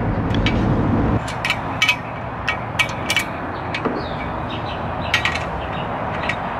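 Irregular light metallic clicks and clinks of a screwdriver and wrench working a bolt and nut through the steel rail of a bike rack as it is tightened. A low rumble stops suddenly about a second in.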